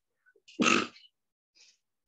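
A person sneezing once, a short, loud burst about half a second in.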